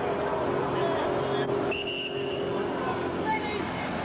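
Indistinct talking of spectators at a football game, over a steady low hum. About two seconds in comes a short, steady high whistle.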